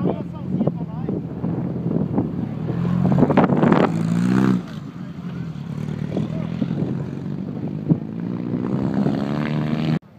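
Dune buggy engine running under acceleration, its pitch climbing; it drops back sharply about four and a half seconds in, then climbs again.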